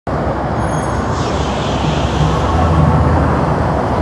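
Loud, steady rumble of motor vehicle traffic, starting abruptly at the very beginning.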